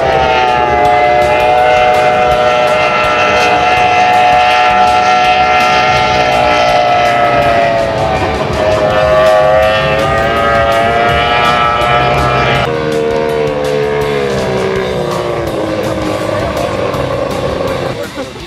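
Mercury outboard engine of a racing powerboat running at high revs, a steady high-pitched engine note that wavers slightly. About two-thirds of the way through the pitch steps down and then sinks slowly as the boat eases off or runs past.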